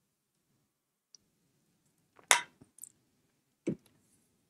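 A man drinking from a travel mug and setting it down. It is mostly quiet, with a short sharp click about two seconds in and a softer knock near the end.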